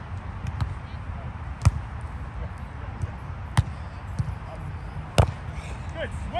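A volleyball struck by players' hands and forearms during a rally: three sharp slaps, about two seconds apart.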